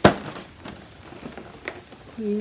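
A single sharp knock as a large cardboard advent calendar box is swung round and handled, followed by a few faint clicks and taps of the cardboard being held and fingered.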